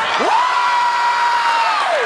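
A man's long celebratory 'whoo' yell: it sweeps up in pitch, holds steady, and drops away near the end. A studio audience cheers underneath.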